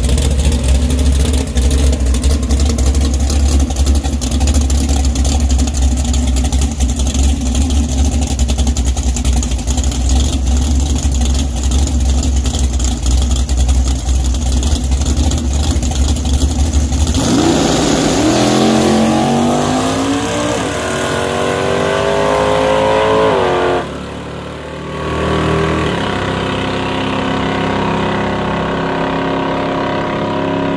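Drag car engine idling close by with a heavy low rumble, then a launch about seventeen seconds in: the engine pitch climbs in steps through the gear changes as it pulls away down the strip. Near the end it settles into a steadier engine drone.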